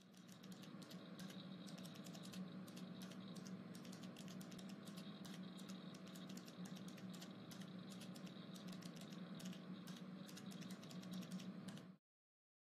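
Faint, rapid and irregular light clicks, several a second, over a steady low hum.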